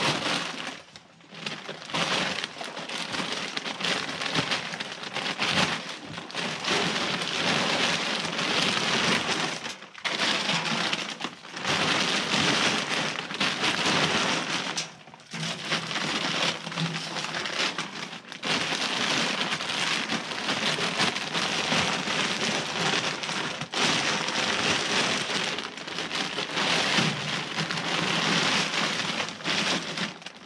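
Sweet-mix grain feed pouring from plastic feed bags into a wheelbarrow, with the bags rustling. It is a steady, rain-like rush broken by a few short pauses.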